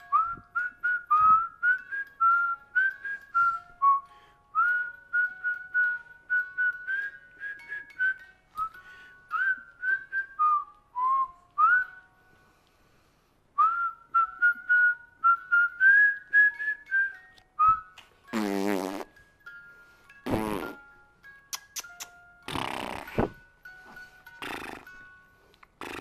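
A person whistling a tune in short, separate notes, several a second, with a brief pause partway through. The whistling stops about three-quarters of the way in and is followed by four loud, breathy bursts.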